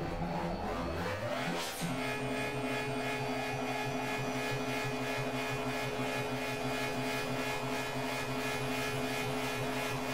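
Experimental synthesizer music: a pitch glide rising over the first two seconds, then a steady pulsing drone of several held tones.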